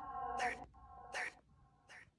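Necrophonic ghost-box app playing chopped, voice-like fragments from its DR60 sound bank: three short held tones, each fainter than the last.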